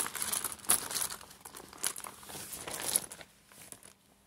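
Crinkling of a silver metallic pouch as a hand rummages inside it to draw letter tiles, rustling irregularly and stopping about three seconds in.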